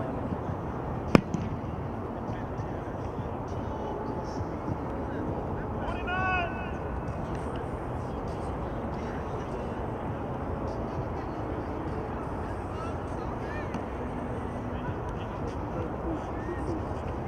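Steady outdoor ambience with a single sharp smack about a second in, the loudest sound, typical of a football being struck on a practice field. A brief distant shout comes near the middle.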